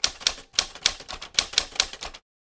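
Typewriter keys clacking as an editing sound effect, a quick uneven run of sharp strikes at about seven a second, as a title card is typed out.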